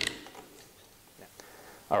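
Faint handling noise of a rifle being moved on a leather mat, with a sharp click at the start and a couple of light ticks about a second in.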